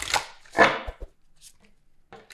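A small deck of oracle cards shuffled by hand: two short bursts of cards slapping and sliding together, then a light tap about a second in.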